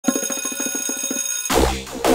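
Electronic logo intro music: a fast run of short, high electronic notes, then a drum beat and deep bass come in about a second and a half in.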